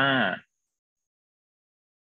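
Speech: the end of a spoken word, a drawn-out vowel with a falling pitch lasting about half a second. Then near silence for the rest.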